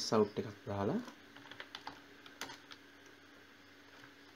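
Typing on a computer keyboard: a few separate keystrokes, starting about a second in.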